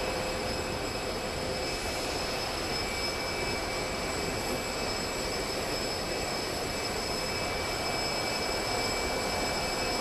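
Jet aircraft running on an airport apron: a steady rushing noise with a few steady high-pitched whining tones, unchanging throughout.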